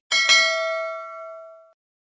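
Notification-bell 'ding' sound effect for a subscribe-bell click: a bright bell tone struck twice in quick succession, then ringing out and fading away within about a second and a half.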